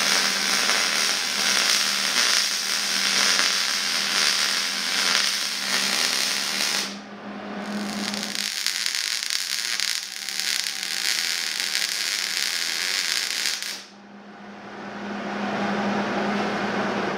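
MIG welding arc crackling steadily as a bead is run on thick steel square tubing: two long runs with a brief pause about seven seconds in, the second cutting off near the end.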